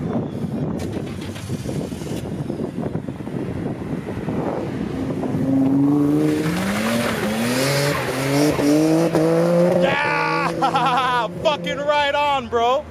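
Nissan Skyline R32's engine idling with a low rumble, then revving as the car pulls away from the curb. Its pitch climbs in several successive runs as it accelerates up the road.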